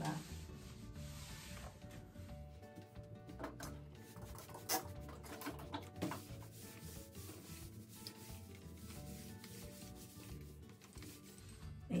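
Electric steam iron sliding back and forth over thin chiffon on a padded ironing board, its soleplate rubbing on the fabric, with a few short knocks around the middle.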